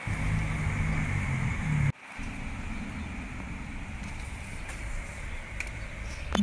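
Steady outdoor background noise with a low rumble and a faint hiss. It breaks off abruptly about two seconds in at an edit and comes back slightly quieter.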